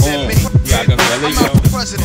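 90s East Coast hip-hop track: a voice raps over a dense drum beat with booming, pitch-dropping kick drums.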